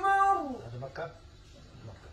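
A man's voice holding the last long note of a melodic Quran recitation, which slides down in pitch and ends about half a second in. Then only faint, brief sounds follow.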